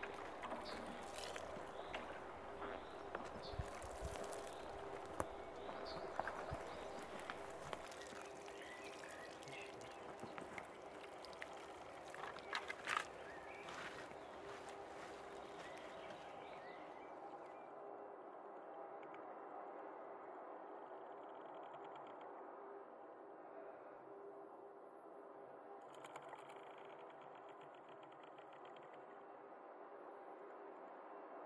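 Faint rustling and crackling on a forest floor of twigs and debris, with a steady low hum underneath. The rustling and clicks stop a little past halfway, leaving only the quieter hum.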